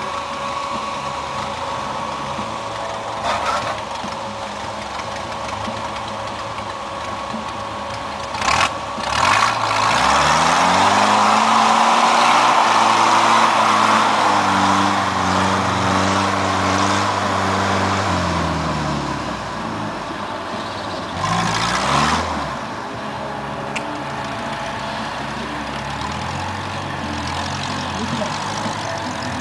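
Off-road trial jeep's engine running low, then revving up about a third of the way in and held at high revs for several seconds under a loud rush of noise as it claws up a rocky slope, before dropping back. A second, shorter burst of revs comes later, and a few sharp knocks are heard along the way.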